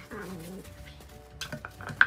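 Miniature schnauzer giving one short low grumbling vocalisation, about half a second long, just after the start: a warning over a contested plastic bottle. It is followed by a few light knocks in the second half.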